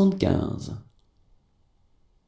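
A voice speaking a French number aloud, ending a little under a second in, followed by near silence.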